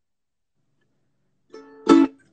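Silence, then a ukulele starting up near the end: a few faint notes, then a loud strummed chord ringing out as the opening of a song.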